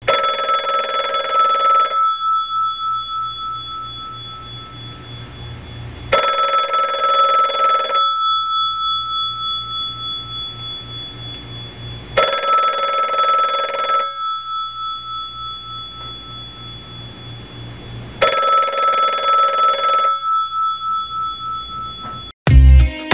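A telephone bell ringing four times, about two seconds of ringing every six seconds. Each ring has a fast flutter and fades slowly before the next one.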